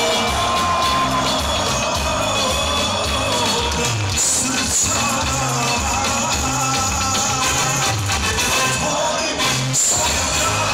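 Live Balkan pop-folk band music with a male lead singer singing into a microphone, played loud over a steady, repeating bass line.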